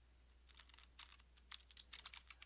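Faint keystrokes on a computer keyboard, coming in a quick, uneven run as a short phrase is typed.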